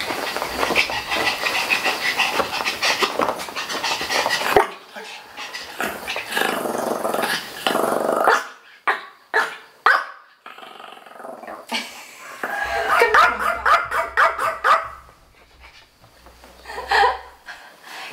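A small dog, a Yorkshire terrier, barking in separate short calls at intervals, wanting to be picked up onto the chair.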